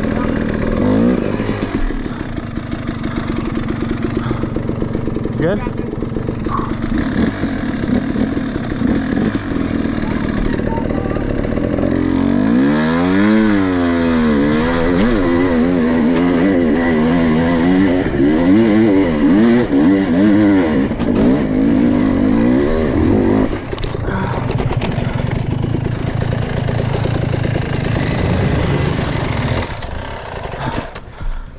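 Dirt bike engines running on a wooded enduro trail: first several bikes idling and blipping together, then from about 12 seconds in one bike revving up and down over and over as it rides the trail, before settling to a steadier, lower engine note.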